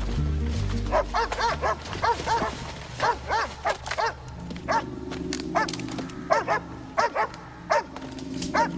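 A dog barking again and again, in quick runs of two or three barks from about a second in, over low sustained background music.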